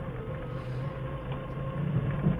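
Forklift engine running steadily at low revs, a low hum with a faint steady whine over it.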